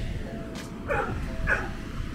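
A dog giving two short yips, about a second in and again about half a second later.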